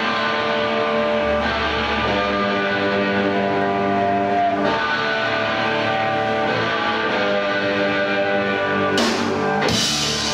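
Live punk rock band starting a song: loud electric guitar chords held and ringing, with the drums and cymbals crashing in about nine seconds in.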